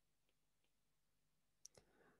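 Near silence, broken by a few faint, short clicks, with two close together near the end.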